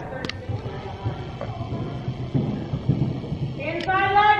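Soft, irregular thuds of a horse's hooves trotting on sand arena footing, with a sharp click about a quarter second in. A long pitched tone starts near the end.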